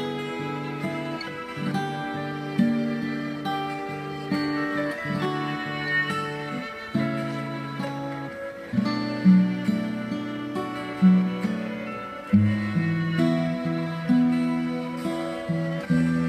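Steel-string acoustic guitar played fingerstyle: a slow chord progression of plucked, ringing notes, with a new pluck every second or so.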